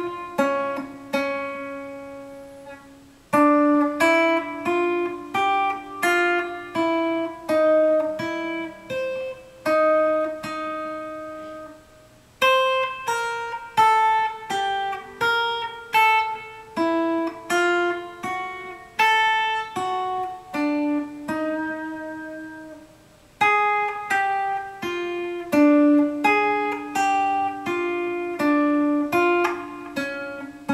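Ibanez AG95 hollow-body archtop guitar playing a bossa nova lead melody slowly, one picked note at a time, each note left to ring. Short breaks about 3, 12 and 23 seconds in divide the phrases.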